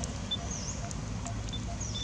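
Birds calling: one repeats a short low note evenly, a little over twice a second, while others give brief high chirps and whistled glides. A low background rumble runs underneath.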